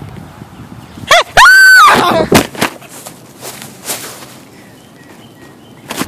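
A child's high-pitched yells: two short cries about a second in, then a loud, shrill one held briefly. A few sharp knocks and rustles follow.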